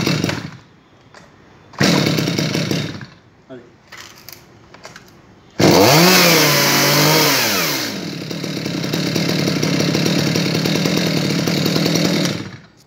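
Stihl MS 250 chainsaw's two-stroke engine being pull-started with the choke set: two short bursts as the cord is pulled near the start and about two seconds in, then it catches about five and a half seconds in, its speed swinging up and down, the loudest part, before it settles into steady running.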